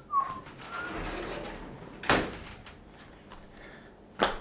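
A couple of short, high squeaks at the start, then rustling and one sharp thump about two seconds in: handling noises in a small room.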